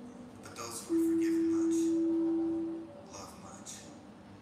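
A workout interval timer's electronic beep: one long, steady, low-pitched tone lasting about two seconds that marks the start of the work interval.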